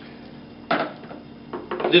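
Sharp metallic clack from a SCAR 17 rifle as it is handled and checked clear, about two-thirds of a second in, then lighter knocks as the rifle is laid down on a stone tabletop.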